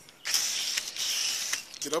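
Hose-end foam gun spraying car-wash soap: a steady, high hiss that starts shortly after the beginning and stops about a second and a half in.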